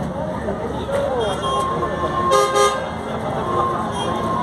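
A vehicle horn honks: a held note, then two short, loud blasts just past the middle, over the voices of a crowd.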